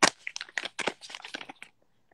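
A plastic resealable pouch crinkling as it is handled close to the phone's microphone: a quick run of irregular crackles, the sharpest right at the start, thinning out before the end.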